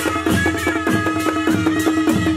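A Nepali panche baja band playing: a reed-pipe melody over barrel-drum strokes that drop in pitch after each hit, with cymbals keeping a steady beat about three times a second.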